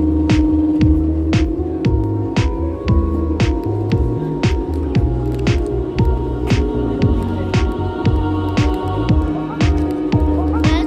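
Background electronic music with a steady beat, about two beats a second, over throbbing bass and a held synth note.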